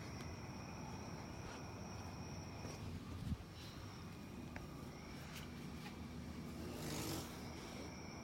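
Outdoor night ambience: steady high insect calls over a low rumble of distant traffic, with one sharp thump a little over three seconds in and a brief rustle near seven seconds.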